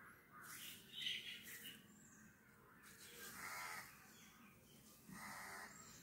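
Crows cawing faintly, two short calls about three and five seconds in, with a brief noise about a second in.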